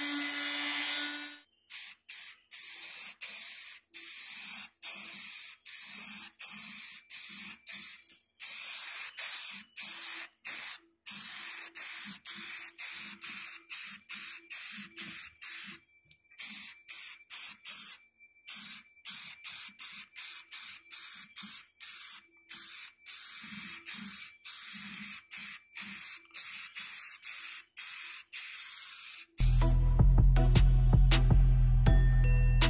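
A triangular-pad detail sander whines steadily for the first second and a half. Then spray paint hisses in many short bursts of under a second each, with brief pauses between them. Music with drums comes in near the end.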